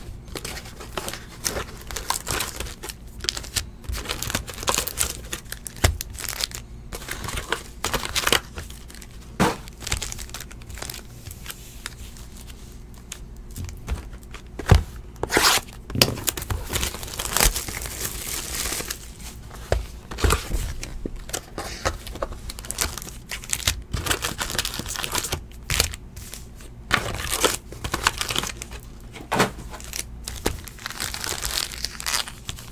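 Foil trading-card packs and their wrapping crinkling, rustling and tearing as they are handled, taken out of a cardboard hobby box and stacked, with irregular clicks from the handling. The noise comes and goes, with louder spells a quarter and two-thirds of the way through and again near the end.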